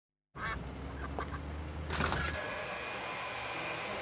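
Indian runner ducks quacking in short calls, followed about two seconds in by a sharp knock with a high ringing tone that fades over about a second.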